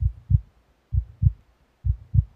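Heartbeat sound: three double low thumps in a lub-dub pattern, about one beat a second.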